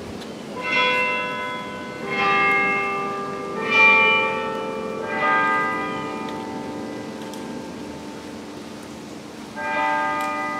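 Bells chiming a slow sequence of four notes of different pitch, about a second and a half apart, each ringing on and fading, then a pause of about four seconds before another strike near the end.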